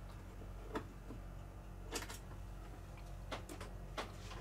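A hand screwdriver working the small screws of a metal ceiling light fixture: a handful of faint, irregular clicks and ticks of metal on metal, over a low steady hum.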